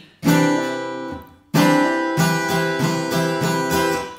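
Acoustic guitar with a capo strumming an F chord with a hammer-on in eighth notes. One strum rings out for about a second, then a steady run of strums follows, about three a second.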